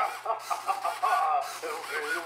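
A prerecorded voice phrase played back by an ISD1820 voice-recorder module through a small 8-ohm speaker inside a Halloween animatronic, triggered by its ultrasonic presence sensor. The voice sounds thin, with no low end.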